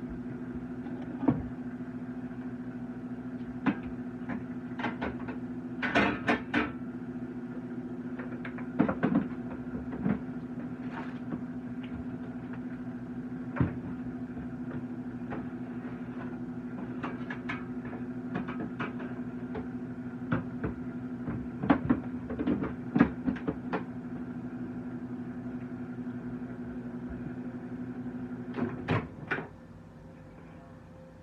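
A running kitchen appliance humming steadily, with scattered knocks and clatters of things being handled, a few in quick clusters. The hum cuts off near the end.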